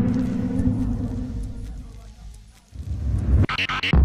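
Intro music and sound effects: a low rumbling drone that fades away over about two and a half seconds. After a brief gap the rumble returns, with a quick run of four or five sharp hits near the end.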